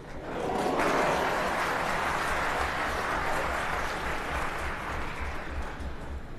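Snooker arena audience applauding a successful escape from a snooker. The applause swells within about a second, then gradually dies away over several seconds.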